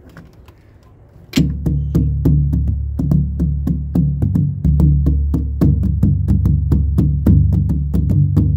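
Hand drum played with bare hands. It starts about a second in with a loud first stroke, then keeps a quick, even rhythm of about four to five strokes a second over a deep, sustained low tone.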